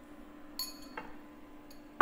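A few light clinks and taps of kitchen utensils being handled on a countertop: a ringing clink about half a second in, a tap a moment later and a small tick near the end, over a faint steady hum.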